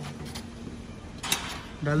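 Handling noise around the grinder's cloth collection bag and steel powder can, with one short scrape or rustle just over a second in, over a faint steady low hum.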